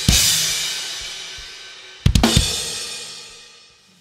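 Tama drum kit: a loud crash on cymbals and drums, ringing out and fading, then a second quick pair of hits about two seconds in that also rings away. These sound like the closing hits of the piece.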